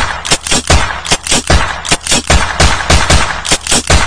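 Rapid automatic-gunfire sound effect: shots come several a second in an uneven rattle.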